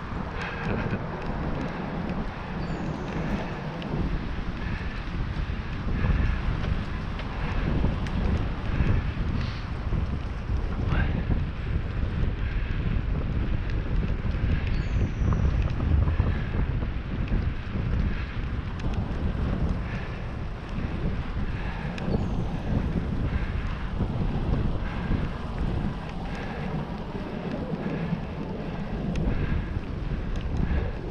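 Wind buffeting a GoPro 7's microphone on a moving bicycle: a steady, gusting rumble with bike and tyre noise from riding a wet paved trail underneath.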